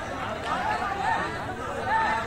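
Several voices of players and spectators talking and calling out at once, overlapping chatter with no single voice standing out.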